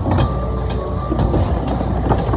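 Skateboard wheels rolling across a wooden mini halfpipe, a loud steady rumble, with a regular ticking beat in the background.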